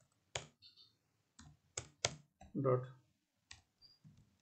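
About five separate computer keyboard keystrokes, spaced irregularly over a few seconds, as a line of code is edited.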